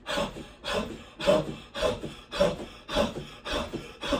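A woman's forceful exhales, all the air pushed out at once, in a steady rhythm of about two a second, each one at the bottom of a bounce on a rebounder: the "lung breaths" breathing drill.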